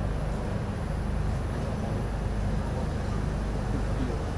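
Steady low mechanical rumble and hum of outdoor background noise, even and unbroken throughout.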